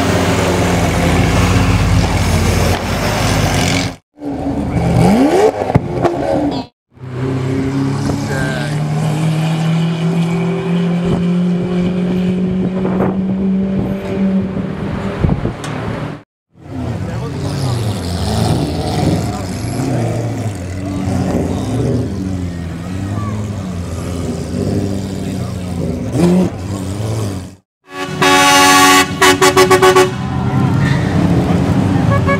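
Lamborghini Aventador V12 engines revving and running in a string of short clips, with sharp exhaust pops about five seconds in and crowd voices around them. A very loud high rev comes near the end.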